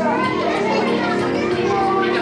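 Many children's voices chattering and calling out together over party music.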